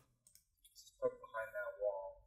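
A man's voice played back from a truck-cab recording after heavy noise reduction. It comes in about a second in, really quiet and thin, with wavering pitch and no low end, and the truck engine noise is gone. A faint click is heard just before.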